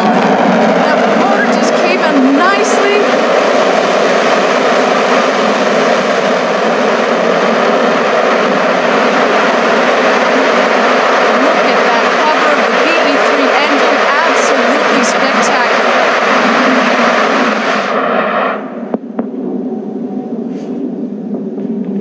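Blue Origin New Shepard booster's BE-3 hydrogen rocket engine firing loud and steady during its powered vertical landing, then cutting off abruptly about eighteen seconds in as the booster settles onto the pad.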